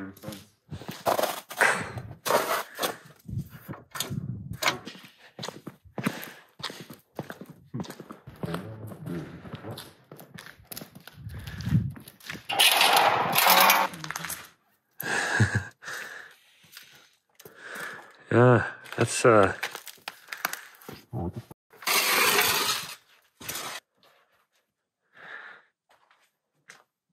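Debris cracking and crunching in irregular bursts, with indistinct voices in between.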